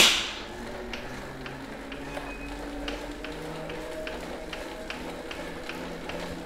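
Tacx Neo direct-drive smart trainer spinning up under a pedalling road bike: a quiet low hum that slowly rises in pitch as speed builds, with faint regular ticks. A sharp click opens it.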